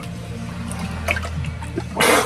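Water sloshing and pouring in an ice-bath tub while a man holds his head under the surface, over background music with steady low notes.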